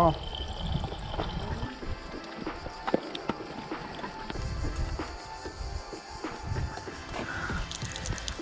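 Thin stream of water trickling from a stone fountain's spout into a plastic bike bottle, with a few light clicks of the bottle being handled.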